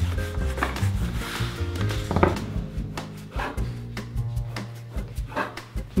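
Background music with steady low notes, over the rubbing of a long wooden rolling pin working a sheet of pasta dough on a wooden board, with a few light knocks.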